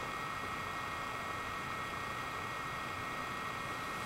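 Steady background hiss with a faint constant high whine: room tone and recording noise.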